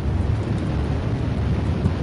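Steady low rumbling drone with a noisy hiss over it, an ominous sound-design bed in the soundtrack.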